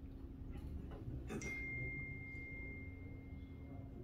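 A light strike about a second in, followed by one clear high ringing tone that fades away over about two and a half seconds, over a steady low room hum.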